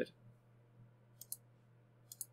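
Two quick computer mouse clicks a little past halfway, faint over a low steady hum.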